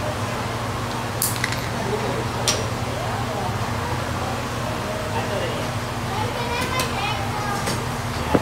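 Crowded golf-range venue ambience: a steady low hum under faint, distant voices, with a few sharp clicks in the first few seconds.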